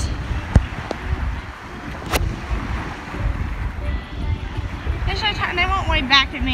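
Wind buffeting a phone microphone on an open beach, a low rumble, with two short clicks early on and a few brief high-pitched calls near the end.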